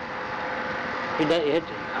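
Steady background hiss with a faint constant hum, then a man says a couple of short words a little over a second in.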